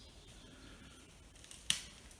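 Faint quiet background with a single sharp click near the end.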